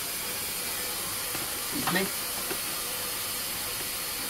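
Steady background hiss with a faint steady hum. One short vocal sound from a person comes about two seconds in.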